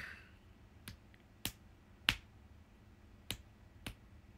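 About five short, sharp clicks close to the microphone at irregular intervals over a quiet room, with a brief soft rustle right at the start.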